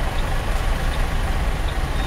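Ford Mustang convertible's 4.0-litre V6 engine running steadily on the move, heard from the open-top cabin mixed with wind and road noise. Its note sounds big and overblown for the car's modest pull.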